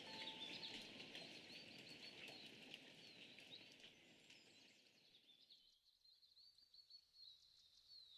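Faint bird chirps over a soft hiss of outdoor ambience, fading out over the first five seconds or so and leaving near silence.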